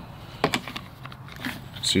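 A few sharp clicks and knocks of a polymer holster and a pistol being handled, the sharpest clack about half a second in.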